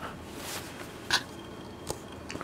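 Faint handling of a stack of trading cards in a quiet room: one short scrape or snap about a second in and a small click near the end.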